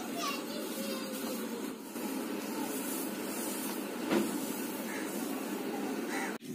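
Indistinct background voices, children among them, over a steady hiss.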